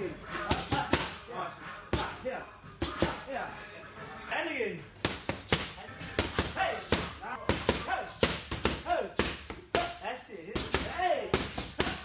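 Boxing gloves smacking into focus mitts in quick combinations, sharp hits coming in bursts of several at a time. Hip hop music plays underneath.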